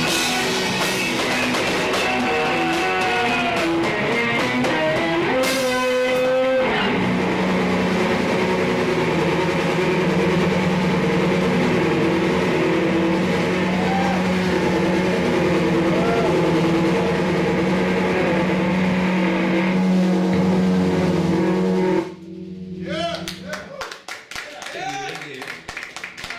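Live rock song on electric bass guitar and drum kit, with a voice over the first several seconds, then sustained low bass notes under the drums. The song cuts off abruptly about two seconds before the end.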